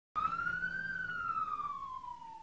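A single siren wail used as a sound effect for a police segment's title: one tone that rises briefly, then falls slowly and fades out.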